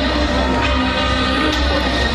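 Loud music with a heavy, continuous bass, played over a stage sound system.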